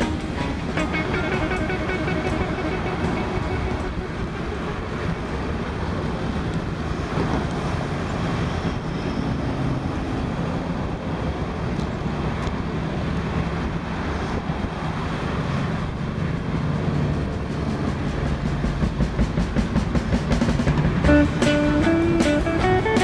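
Steady rushing wind and ride noise on the camera microphone while cycling along a path. Guitar music fades out in the first couple of seconds and comes back in near the end.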